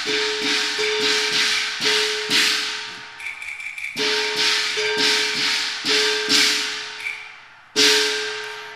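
Cantonese opera percussion interlude between sung lines: cymbal crashes and a ringing gong struck in a halting rhythm, dying down briefly about three seconds in and again just before a loud strike at the end.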